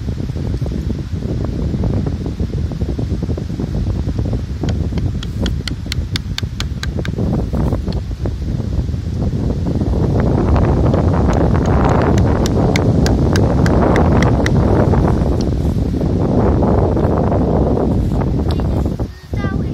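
Carving knife scraping bark off a tree branch in short strokes, heard as two runs of quick clicks about four a second, over heavy wind and handling rumble on a phone microphone.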